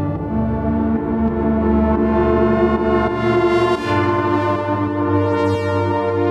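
UK garage club music playing from a DJ mix: held synthesizer chords over a deep bass line, with no strong drum hits. The bass note changes about four seconds in.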